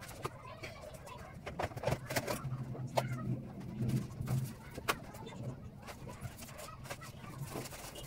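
Scattered knocks and clatter of household items being shifted about on a cabinet shelf, with a low hum that swells about two seconds in and fades out around the middle.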